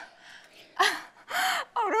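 A woman's two short, breathy laughing gasps, about a second in and half a second apart, just before she starts speaking again.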